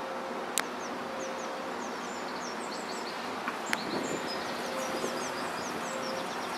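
Small songbirds chirping in quick short high notes over a steady hum of distant traffic, with two sharp clicks, one about half a second in and one nearer four seconds.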